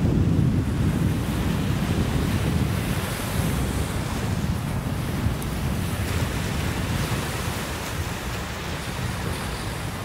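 Small ocean waves washing in the shallows, with wind rumbling on the microphone; the sound eases a little toward the end.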